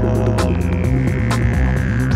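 A didgeridoo drone in an electronic soundtrack: a deep, throbbing low drone that pulses unevenly. Sharp clicks land about once a second, and a thin high tone slides slowly downward through the second half.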